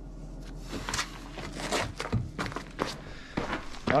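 A man moving about and shouldering a backpack in a cave: a string of irregular scuffs, rustles and knocks, like footsteps and gear being handled.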